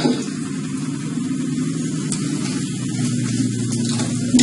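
Steady low hum with a hiss of background noise, unchanging throughout.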